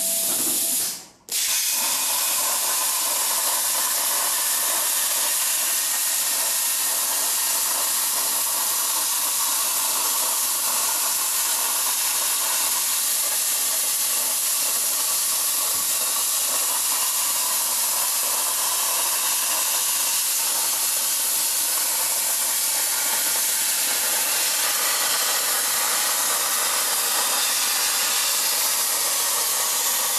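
Hypertherm Powermax 1250 air-plasma torch on a CNC table cutting 1/8-inch mild steel, with a steady loud hiss. The hiss cuts out for a moment about a second in and starts again as the arc relights.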